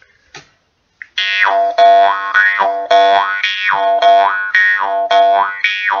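Jaw harp being played, starting about a second in: a steady twanging drone with a bright overtone that glides down and back up over and over as the mouth shape changes. A few faint clicks come before it begins.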